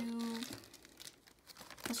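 Faint crinkling of a clear plastic bag being handled, starting about half a second in after a held 'um'.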